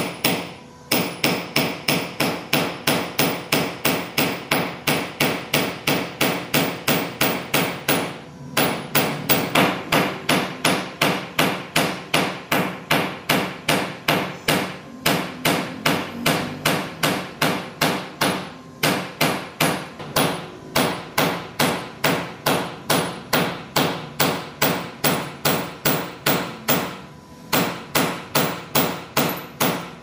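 Hand hammer forging a red-hot strip of bearing steel on a thick steel disc used as an anvil: a steady run of sharp metal-on-metal blows, about three a second, with a few brief pauses.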